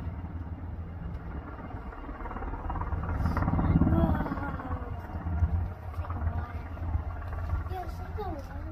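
UH-60 Black Hawk helicopter flying with a bambi water bucket slung beneath, a steady low rotor drone. A voice is heard briefly, about three to four seconds in, when the sound is loudest.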